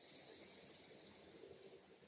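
Near silence with a faint, soft hiss of a fluffy makeup brush sweeping highlighter powder over the cheek, fading over the two seconds.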